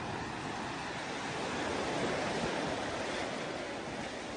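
Sea surf and wind making a steady rushing noise that swells a little towards the middle and then eases slightly.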